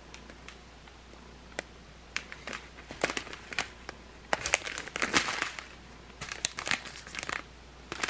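Clear plastic bags of diamond-painting rhinestones crinkling as they are handled, starting with a few faint clicks and building into bursts of crinkling about two seconds in, loudest around the middle.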